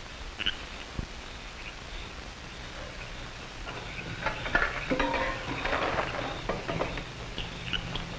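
Faint clinks and clatter of camp cookware being handled, getting busier about halfway through, over the steady hiss of an old film soundtrack.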